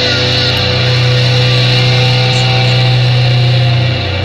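Rock music led by distorted electric guitars, holding a steady low chord.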